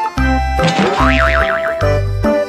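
Background music with a repeating bass line. About halfway through, a springy, boing-like sound effect wobbles rapidly up and down in pitch.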